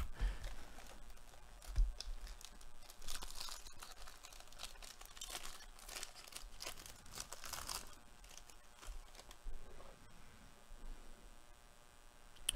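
The crimped foil wrapper of a 2022 Bowman Jumbo baseball card pack being torn open by hand and crinkled, in several crackly spells.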